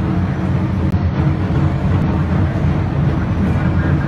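Steady low rumble with an indistinct murmur: the room noise of a large, crowded, echoing church picked up on a phone microphone.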